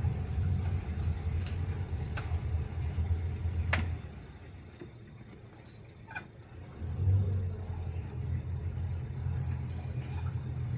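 Boat engine running at low speed, a steady low rumble that drops away about four seconds in and comes back about three seconds later. A few sharp clicks and chirps sit over it, the loudest just past halfway.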